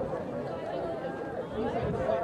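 Indistinct chatter of several people talking at once, with no words clear.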